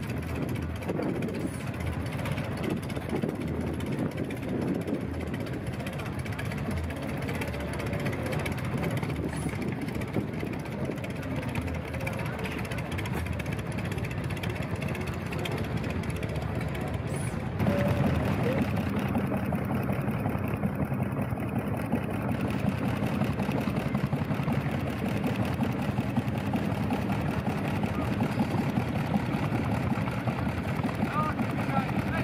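Indistinct crowd chatter over vintage engines running. Just past the middle the sound changes abruptly and a steady engine note comes to the fore.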